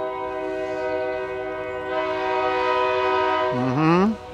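Train air horn sounding one long chord of several notes at once, held steady for about three and a half seconds and growing a little louder partway through.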